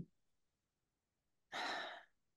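A woman sighs once, a short breathy sigh about one and a half seconds in, after a stretch of dead silence.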